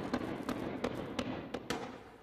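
Street-clash sound: about ten sharp, irregular bangs and pops over a steady rough background noise, from riot-control launchers firing tear gas canisters.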